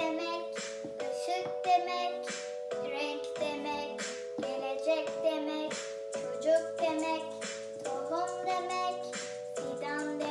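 A young girl singing a Turkish children's song over a backing track of steady held chords that change every second or so.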